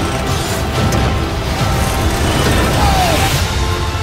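Trailer soundtrack: dramatic music under loud rumbling, crashing sound effects. About three seconds in, the noise falls away and sustained music tones carry on.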